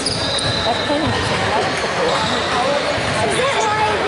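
Indistinct chatter of several voices, echoing in a large sports hall.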